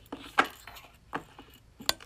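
Bubbles of a yellow silicone flower pop-it fidget toy being pressed by fingers, giving several separate sharp pops spread out over about two seconds.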